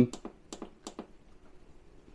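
Buttons on a Ninja Flex Drawer air fryer's control panel being pressed, several quick sharp clicks in the first second, then fainter.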